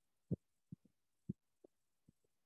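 Faint, soft low thumps, about five of them at uneven spacing, the loudest about a third of a second in and another just after a second in.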